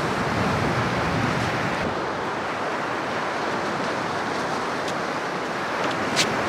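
Surf washing on the beach: a steady, even rush of waves.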